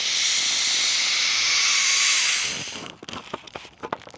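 Air hissing steadily out of the pinched valve of a Luci inflatable solar lantern as it deflates, dying away about two and a half seconds in. Light clicks and crinkles of the lantern's plastic follow as it is pressed down.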